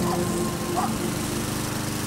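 Lawn mower running steadily.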